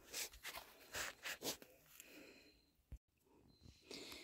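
Faint, brief rustling and scuffing noises of hands working with seedlings and plastic nursery pots, several in quick succession in the first second and a half. The sound cuts out completely for a moment about three seconds in.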